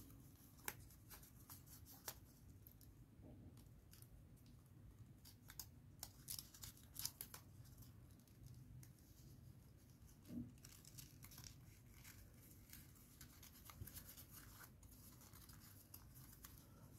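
Faint crinkling and rustling of folded origami paper units being handled and slid into one another, a scatter of small crackles at an uneven pace.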